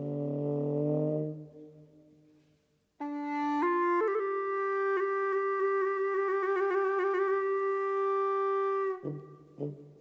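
A trombone holds a low note that fades away about a second in. After a near-silent gap, a bawu (Chinese free-reed pipe) enters about three seconds in, steps up to a long held note decorated with wavering ornaments, and cuts off near the end, when the low trombone note briefly returns.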